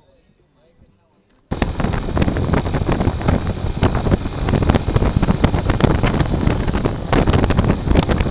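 Faint and quiet at first, then about a second and a half in, loud wind buffeting on the microphone of a motorcycle-mounted camera riding at about 56 to 67 km/h.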